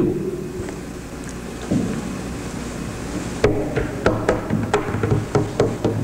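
A man getting up from his chair and moving about, over a low steady hum. From about three and a half seconds in comes a run of sharp knocks and clicks, about four a second.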